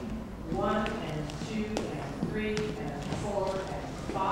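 A woman's voice counting dance steps aloud in short words about a second apart, with a few sharp taps and scuffs of boot heels on a wooden parquet floor.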